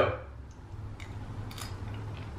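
A person eating a spoonful of chia seed pudding, chewing with the mouth closed: faint, soft mouth clicks over a steady low hum.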